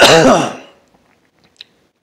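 A man clearing his throat with a short cough, over in about half a second.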